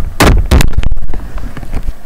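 Loud handling noise on the recording device's microphone as the camera is grabbed and swung round: a few sharp knocks in the first half second, then rumbling and rubbing that dies down near the end.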